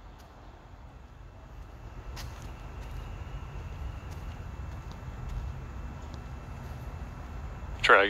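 Outdoor night ambience: a low rumble that swells through the middle and eases off, with a few faint clicks.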